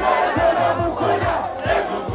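Loud live concert music with a steady kick-drum beat about twice a second, and a crowd's massed voices over it.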